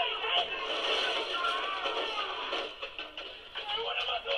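Soundtrack of the sketch being watched: music with some speech over it, thin in tone with little bass.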